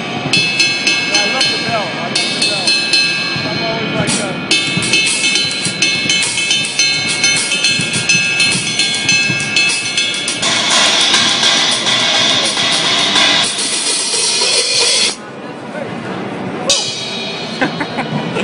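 Istanbul Mehmet Realistic Rock cymbals struck with a drumstick: quick strokes on the ride with its clear, defined ping and a ringing wash building underneath. About ten seconds in, a louder crash wash rings for around three seconds; it quiets briefly near fifteen seconds, then the strokes pick up again.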